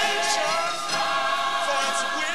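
Gospel mass choir singing, many voices holding and bending notes together.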